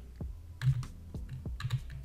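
Computer keyboard typing: several irregular keystroke clicks, with a quicker run of keys near the end.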